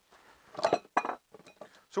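Metal clamps being handled and tightened onto a wooden slab: a sharp clink with a brief metallic ring about half a second in, another click just after a second, then a few lighter ticks.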